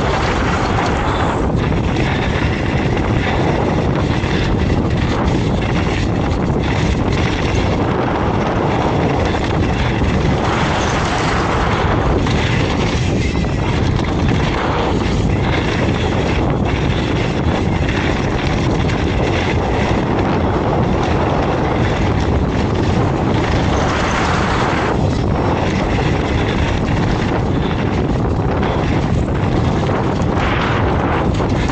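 Wind rushing over a helmet-camera microphone as a hardtail mountain bike descends a dirt trail at speed, with tyres rolling on the dirt and the bike rattling over bumps in many short clicks.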